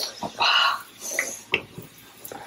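A hand-cranked brass murukku press squeaking as its screw handle is turned, pushing karapoosa dough into hot oil that sizzles faintly. A couple of sharp metal knocks come in between.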